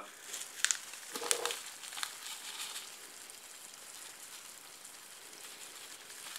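A few light clicks and knocks of kitchen handling in the first two seconds, then a faint steady hiss.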